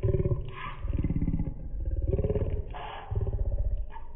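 A man's voice talking in short phrases, so rough and distorted that no words come through; it reads more like a growl than speech.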